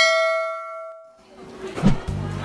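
A bell-like ding sound effect for a subscribe-and-bell animation, one struck chime ringing out and fading away over about a second. A short swell of noise follows near the end.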